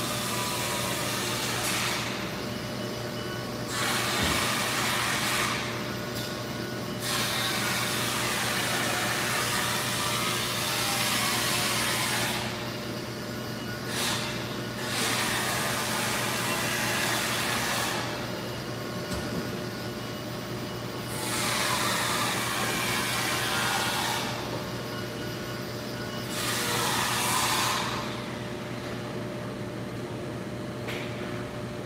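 High-pressure washer spraying a semi truck in a wash bay, the hiss starting and stopping in stretches of a few seconds, about six times, as the trigger is worked. A steady low hum runs underneath throughout.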